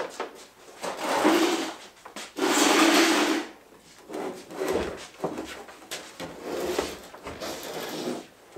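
Scraping and rubbing while a large vehicle body panel is handled: two loud scrapes of about a second each near the start, then lighter scrapes and small knocks.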